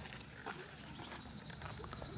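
Steady high chirring of insects in the grass, with a few soft footsteps on a dirt path about half a second apart.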